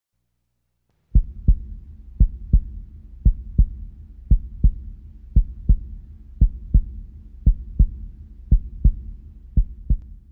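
Low double thumps in a lub-dub heartbeat rhythm, one pair about every second, over a low steady rumble. They start about a second in.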